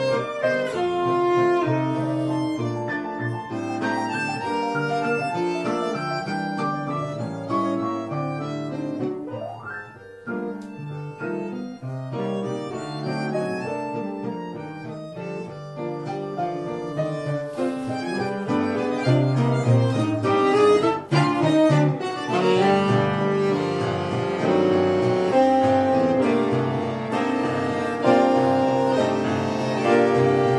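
A quartet of bandoneon, piano, saxophone and acoustic guitar playing a waltz live. The music thins and drops in level about a third of the way in, then builds fuller and louder through the second half.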